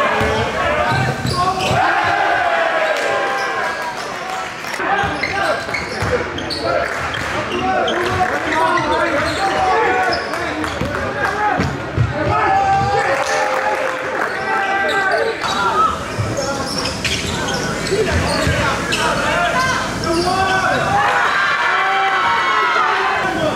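Live basketball game sound in a gym: a ball dribbling on the hardwood court, with players' and onlookers' voices echoing in the large hall.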